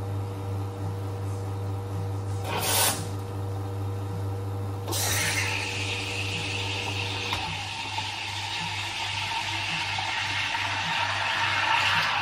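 An espresso machine's steam wand: a short blast of steam a little before three seconds in, then a long steady hiss from about five seconds in. A steady low machine hum underneath stops about seven seconds in.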